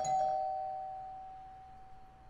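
Two-tone doorbell chime: a higher note and then a lower one, struck close together at the start and ringing out, fading slowly over about two seconds.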